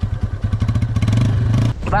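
Motorcycle engine running with a fast, even beat. It is revved up from about halfway through, then stops abruptly near the end.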